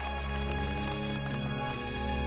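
Orchestral film score with low sustained chords, with light scattered knocking sounds over it in the first second or so.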